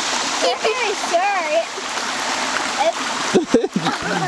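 Shallow mountain creek running over rocks, with a child's feet splashing through the water.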